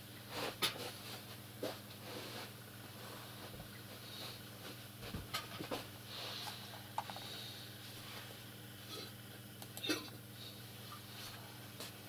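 Steady low electrical hum with scattered small clicks and soft, short hissy noises. The sharpest clicks come about half a second in, near seven seconds and near ten seconds.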